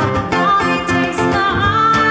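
Live music: a woman singing into a microphone over an electric guitar, her voice coming in with long held notes about a third of a second in.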